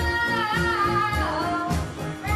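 A pop song: a voice singing held notes, sliding in pitch about a second in, over a steady beat.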